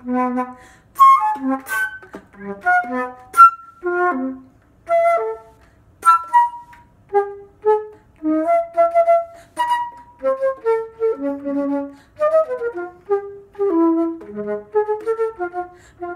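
Solo flute with a curved headjoint playing a contemporary piece: short separate notes and quick figures that leap between low and high pitches, broken by brief gaps between phrases.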